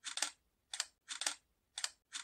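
DSLR shutter firing repeatedly while taking interferogram frames, each release a quick double click, about four in two seconds.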